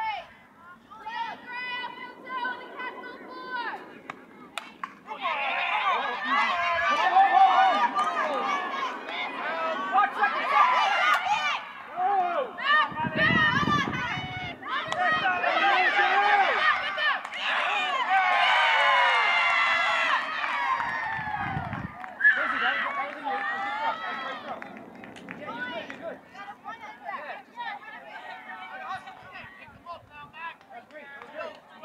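Spectators and players shouting and cheering over one another as a play unfolds, loudest through the middle and dying down near the end. Two brief low rumbles break in partway through.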